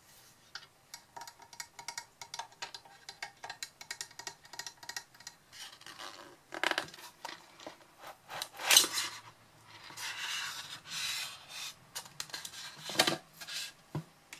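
Fingernails tapping and clicking rapidly on the metal body of a Blue Yeti microphone. After about six seconds, louder rubbing and scraping follows as the microphone is handled out of its polystyrene packaging, with a sharp knock about nine seconds in and another near the end as the metal stand meets the table.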